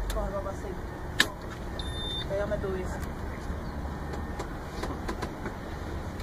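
Truck's ignition key turned to on with a single sharp click about a second in, then a brief faint high beep, over a low steady rumble in the cab.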